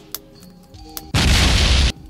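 Explosion sound effect: a loud burst of noise with a heavy low end, starting about a second in and lasting under a second before it cuts off abruptly. A few faint clicks come before it.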